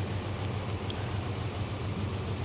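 Steady low hum of an idling vehicle engine, with a couple of faint ticks.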